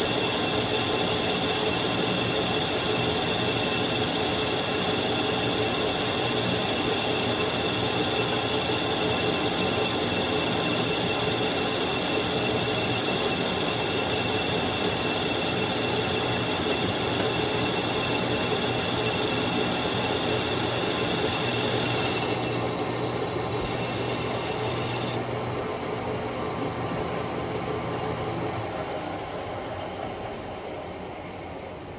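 Metal lathe running with its tool taking a turning pass on a bushing: a steady machine drone with a high ringing tone over it. The high tone stops a little over two-thirds of the way through, and the machine grows quieter near the end.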